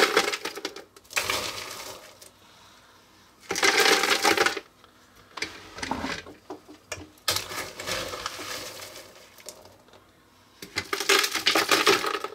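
Ice cubes spooned into the bucket of an electric ice cream maker, clattering against each other and the canister in about five separate bursts.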